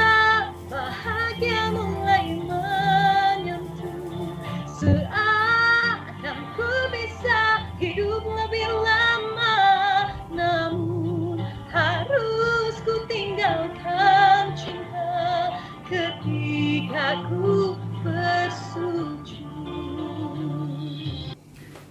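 A woman singing a soft ballad, her melody lines wavering and ornamented, over a low sustained accompaniment.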